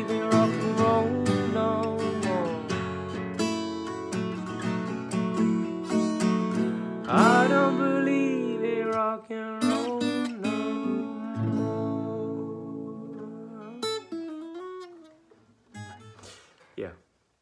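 Acoustic guitar strummed in full chords with a man singing along. After about nine seconds the strumming thins to occasional chords, a few softer notes follow near the end, and the playing dies away.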